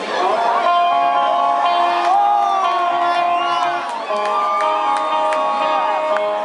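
Live rock band opening a song with held electric guitar notes, moving to a new chord about four seconds in, over a crowd cheering and whooping.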